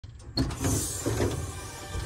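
A sharp knock, then a few dull thumps and a short scrape as a large car part is handled and lifted.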